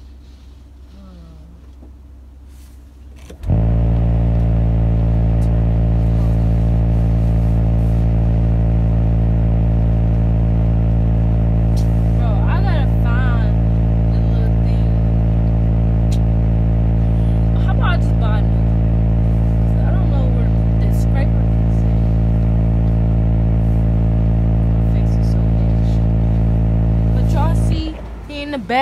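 A loud, steady low drone with even overtones, like a car engine running at a constant speed picked up through the car's body. It starts suddenly a few seconds in and cuts off just before the end.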